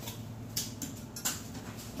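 Faint handling noise: a few light clicks and rustles as a glass-ceramic Dutch oven with its glass lid is lifted out of a cardboard box.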